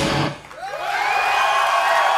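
A rock band's closing chord cuts off just after the start, and after a brief dip a concert crowd cheers and whoops.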